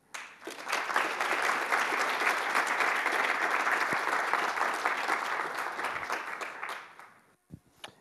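Audience applauding at the end of a talk. The applause starts right away and dies away about seven seconds in.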